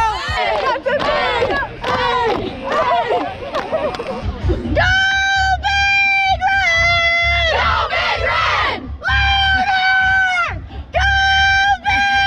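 A group of young women shouting and cheering together, then chanting in unison in loud, high, held notes, each about a second long, in three bursts with short breaks between.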